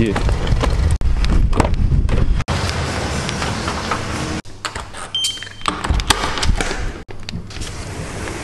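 A string of short clips cut together: vehicle and street noise around a car, then doors being pushed open, ending with a sliding balcony door. The sound breaks off abruptly several times at the cuts.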